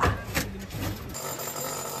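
Indistinct noise at first, then about a second in a steady ringing tone at several pitches sets in and holds.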